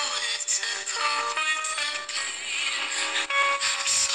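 Homemade ten-transistor FM radio running on 1.5 V, playing a broadcast of music with singing through its speaker, with little bass.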